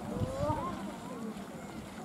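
Overlapping, indistinct voices of a group of people talking as they walk, with a couple of low thumps in the first half second.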